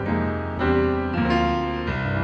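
Piano chords played with both hands: three chords struck, about half a second in, just past a second and near the end, each ringing on over the held notes.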